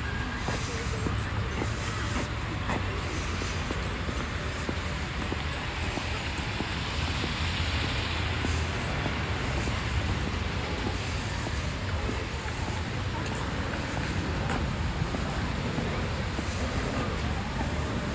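Steady outdoor street noise: a low, even rumble of road traffic.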